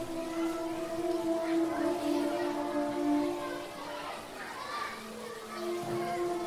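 Soft background music of sustained, held notes, with faint distant voices like children at play over it.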